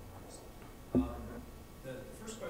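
A single dull knock on the wooden lectern about a second in, picked up boomy and loud by the lectern microphone. Faint distant speech runs around it.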